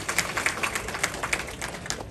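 Applause: many people clapping, the claps thinning out slightly near the end.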